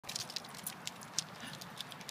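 A Schnauzer scrambling up a tree trunk: a quick, irregular run of light clicks and scratches as it climbs.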